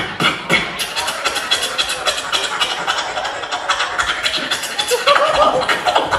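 Beatboxer performing a fast battle routine into a handheld microphone, amplified on stage: rapid percussive clicks and snares, with a wavering pitched vocal tone and a louder passage about five seconds in.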